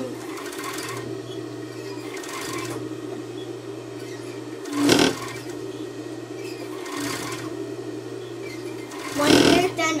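Industrial overlock (serger) sewing machine humming steadily, running in short spurts as it stitches and trims a knit fabric edge. Two louder short sounds come about halfway through and near the end.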